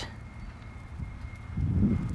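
Low outdoor rumble of wind on the microphone, louder from about three quarters of the way in, with faint hoofbeats of a horse trotting on arena sand.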